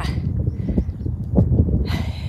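Wind buffeting the camera microphone, a loud, steady low rumble, with a light click about a second and a half in.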